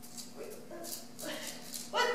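A person's short wordless vocal sounds that rise and fall in pitch, over a few faint clicks.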